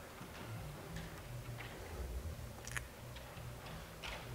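Quiet room tone of a church sanctuary: a steady low hum with a few faint scattered clicks and small knocks, one sharper click a little before three seconds in.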